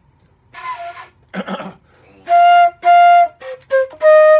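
Concert flute playing detached notes: two held notes about half a second apart from just past the middle, then two quick lower ones near the end, in a passage that switches between C and E flat.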